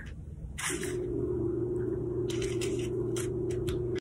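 Hands pressing sticky vegetable-nugget mixture flat into a plate of breadcrumbs: a few short, soft scrapes, scattered over the few seconds. A steady low hum sits under them from about half a second in.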